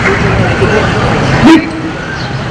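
Voices over a steady outdoor background noise, with a short sharp knock about one and a half seconds in.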